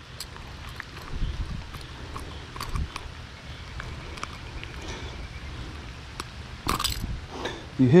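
Handling noise as a soft-plastic lure is worked free of a caught largemouth bass's mouth: scattered faint clicks over a steady low background, with a short louder rustle near the end.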